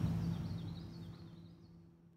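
Background ambience fading out steadily: a steady low hum with faint, short high chirps over a light noise haze.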